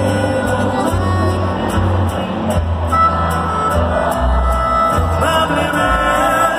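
Live regional Mexican band music played loud over the PA, with accordion, guitars and a deep bass line that steps between held notes.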